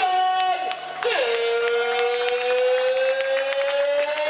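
A ring announcer's voice over a microphone and hall speakers, holding one long drawn-out call: a short higher note, then a long note that rises slowly over about three seconds. A crowd applauds underneath.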